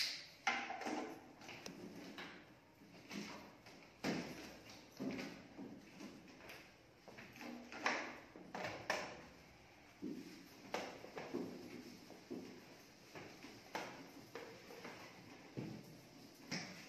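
Irregular knocks, taps and rustles of objects being handled on a classroom table, in an echoing room.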